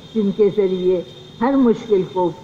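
A woman speaking into a microphone in short phrases with a brief pause. Under her voice runs a steady high-pitched trill, typical of crickets.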